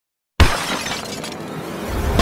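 A sudden crash, like something shattering, about a third of a second in, fading away over the next second and a half.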